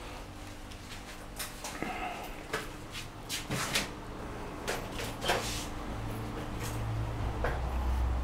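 Scattered rustles and soft knocks from movement among close foliage and handling of the camera and microphone, with a low hum coming in about five seconds in.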